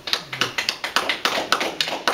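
A few people clapping, irregular sharp claps several a second.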